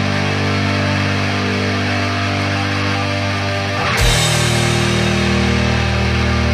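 Atmospheric black metal: distorted guitars and bass holding sustained chords, with a sudden change of chord about four seconds in.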